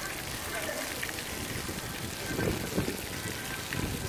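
Floor-fountain water jets spraying up from grates in the paving and splashing back down onto the stone, a steady rain-like pattering.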